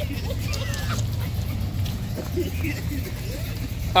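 Car engines idling with a steady low rumble, with faint distant voices and short wavering calls over it.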